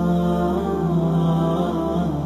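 Chanted vocal music: one voice holding long, slowly shifting notes over a steady low drone.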